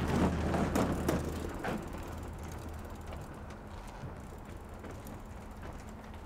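A bicycle's freewheel hub ticking as it coasts along a boardwalk, with a low rumble of tyres on the deck. It is loudest in the first two seconds, then fades as the bike pulls away, with a few sharp knocks in between.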